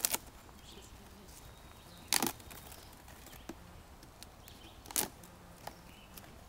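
A cardboard pet carrier being handled as its top flaps are worked open: three short, sharp cardboard rustles, one at the start, one about two seconds in and one about five seconds in, with quiet between them.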